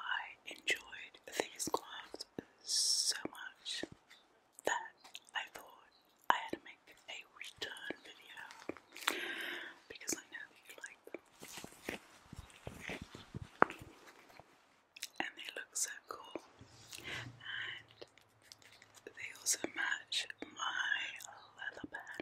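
Close-mic whispering with wet mouth clicks, mixed with the crackle and rub of black gloves moving right at the microphone. There is a brief hiss about three seconds in.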